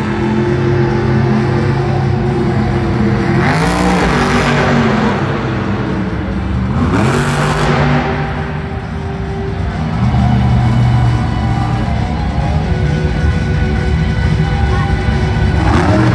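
Monster truck's supercharged V8 running hard on a dirt track, revving up in surges about three and a half seconds in, about seven seconds in and again near the end, with music playing over it.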